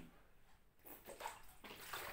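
Faint gulping and sloshing of water as a man drinks from a plastic water bottle.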